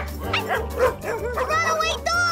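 Cartoon dogs barking and yipping over background music with a steady bass line, ending in a longer wavering whine.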